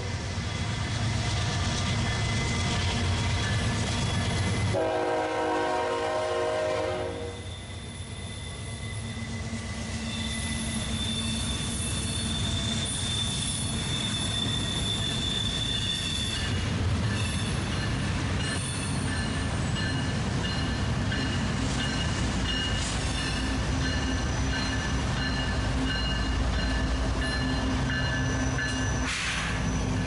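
Two freight trains passing at close range: a steady rumble of diesel locomotives and wheels on the rails. A multi-note locomotive horn sounds for about two seconds, about five seconds in. Thin high wheel squeal follows.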